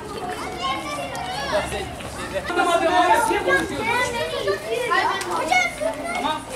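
A group of children talking and calling out over one another, with someone saying "hadi" (come on) near the end.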